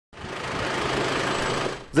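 A motor vehicle's engine running close by: a steady rattling noise that fades out near the end.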